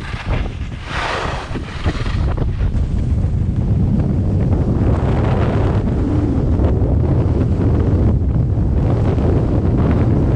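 Wind buffeting the camera's microphone as the rider moves down a groomed ski slope: a dense low rumble that grows louder after about two seconds and then holds. There is a brief hiss about a second in.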